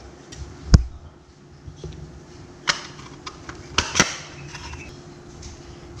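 Clicks and knocks of a plastic spring-loaded mooncake press as its patterned stamp plate is fitted onto the plunger: one sharp click about a second in, then a few lighter clicks near the middle.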